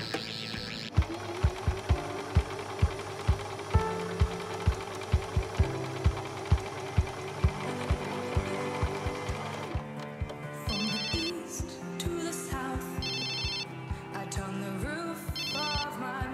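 Background music with a steady beat. From about ten seconds in, a mobile phone rings three times, each ring a short trilling burst about two seconds after the last.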